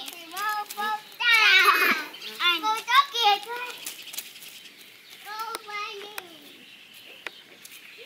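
Young children's high-pitched voices chattering and squealing in short bursts, loudest about one and a half seconds in, then quieter near the end.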